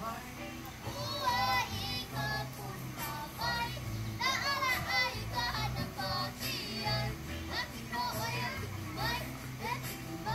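Music with a child's high singing voice carrying melodic phrases over a steady low bass line.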